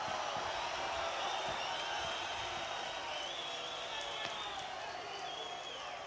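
Large open-air concert crowd cheering and shouting after a song ends, a steady wash of many voices with no music.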